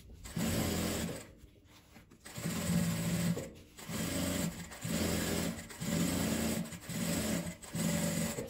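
Sewing machine stitching through quilted fabric along a zipper seam, topstitching the seam. It runs in short spurts of about a second with brief stops between them, and pauses longer about a second in.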